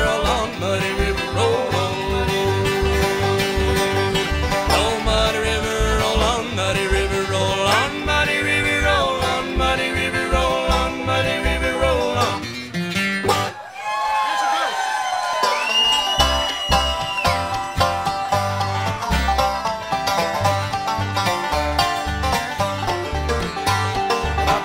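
A live bluegrass string band of fiddle, banjo, acoustic guitar and upright bass plays an instrumental passage with a steady bass pulse. About halfway through, the bass drops out for a couple of seconds under sliding pitches, then the full band comes back in.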